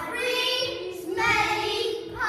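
A group of young children's voices chanting together in unison, in a sing-song way.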